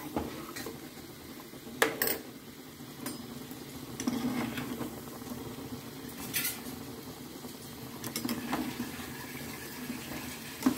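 Bhajiya fritters frying in oil in a small metal kadhai with a steady sizzle. A metal slotted spoon clinks and scrapes against the pan as the fritters are stirred, loudest in two sharp clinks about two seconds in, then again a few times later.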